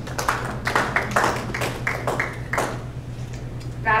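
A small audience clapping: scattered, irregular claps that thin out and stop about two and a half seconds in. A steady low hum runs underneath.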